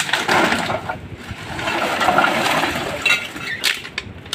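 Empty plastic bottles knocking and crackling against each other and a plastic bag rustling as litter is gathered up by hand.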